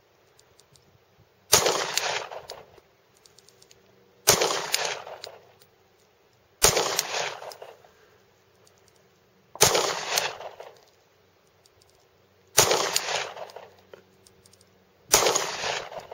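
Six single pistol shots in slow aimed fire, two to three seconds apart, each trailing off in an echo that lasts about a second.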